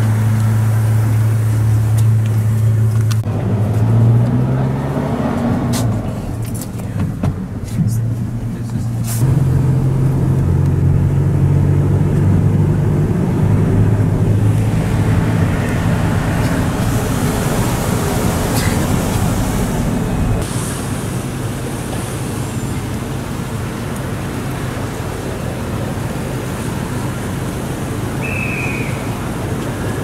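Minibus engine running and road traffic heard from inside the bus: a steady low engine hum that changes pitch a few times, with scattered knocks and clicks in the first several seconds.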